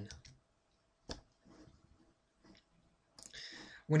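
A computer mouse button clicking once sharply about a second in, with a few fainter clicks after it.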